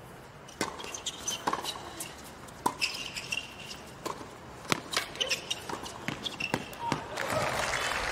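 Tennis rally on a hard court: a string of sharp pops as rackets strike the ball in serve and volley exchanges, with a few short shoe squeaks. Near the end the crowd begins to applaud the point.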